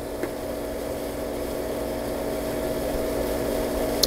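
Pool heat pump running: a steady mechanical hum with a fan's rushing noise, slowly getting louder. A small click about a quarter second in.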